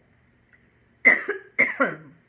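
A woman coughs twice in quick succession, about a second in, from a dry throat.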